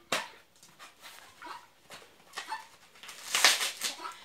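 Helmeted guineafowl giving its harsh, rapid rasping "tô fraco" call near the end, with faint rustling and tearing of dry coconut husk fibre pulled by hand before it.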